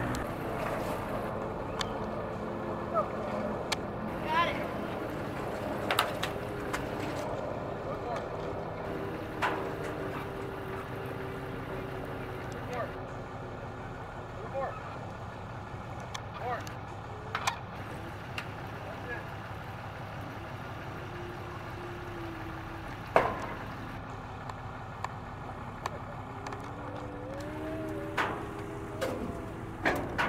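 A steady low motor hum with scattered sharp knocks, the loudest a little past two-thirds of the way through.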